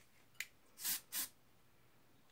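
Aerosol hairspray can: a small click, then two short hisses of spray about a second in, the second one briefer.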